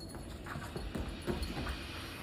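A pet scrabbling at a couch and on a wooden floor: irregular soft knocks and scuffs, bunched in the middle.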